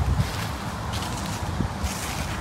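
Wind rumbling on a phone microphone outdoors, with a faint rustle about a second in and again near the end.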